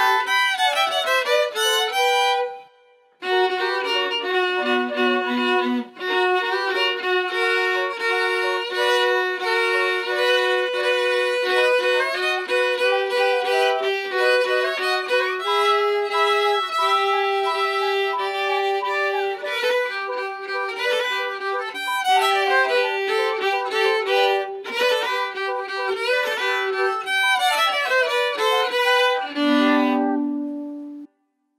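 Two violins and a transverse flute playing a piece together as a trio, with a brief pause about three seconds in before the playing resumes.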